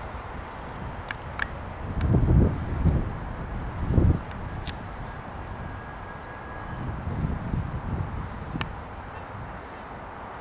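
Low outdoor rumble with several gusts of wind buffeting the camera microphone, the loudest about two and four seconds in, and a few light clicks from handling the camera.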